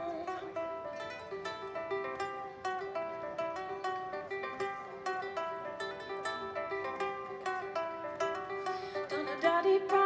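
Solo instrumental passage on a small ukulele-sized plucked stringed instrument: a quick picked melody of several notes a second over one note that keeps ringing underneath.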